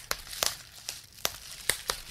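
Bubble wrap being popped: about six sharp pops at uneven intervals, with the plastic crinkling between them.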